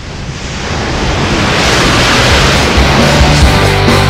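A rushing, wind-like noise that swells louder over the first two seconds. Rock music with a heavy beat then comes in about three seconds in.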